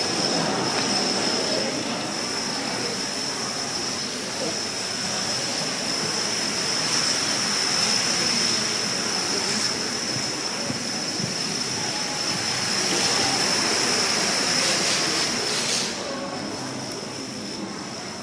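Thousands of plastic dominoes toppling in chains, a continuous dense clattering rush, with a steady high whine over it that cuts off near the end.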